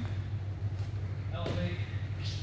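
A steady low hum, with a short burst of a man's voice and a sharp knock about one and a half seconds in.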